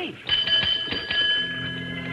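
A small bell rung in a quick run of strikes, each one ringing on. About halfway through, an organ music cue comes in and holds a chord under it.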